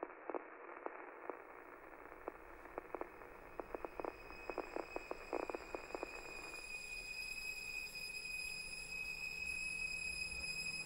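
Muffled crackling static with scattered clicks, like a poorly tuned radio, dying away about six and a half seconds in. Meanwhile high steady electronic tones and a low hum fade in and slowly grow louder.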